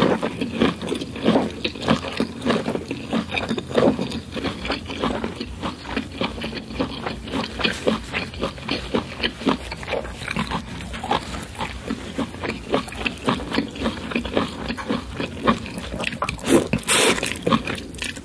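Close-miked wet chewing and lip-smacking of someone eating corn on the cob, with a louder crunching bite into the cob near the end.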